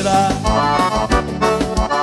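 A live band plays an instrumental break of a gaúcho vaneira. The piano accordion leads over electric bass and a steady low beat.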